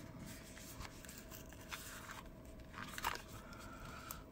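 Faint scratching and small clicks of fingers prying at a small, tight-fitting box to get it open, over a faint steady hum.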